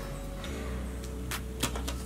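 Soft background music with steady held tones, and two small clicks in the second half as a plastic powder compact is handled.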